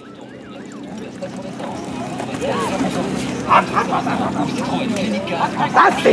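Voices calling out over outdoor background noise, growing steadily louder.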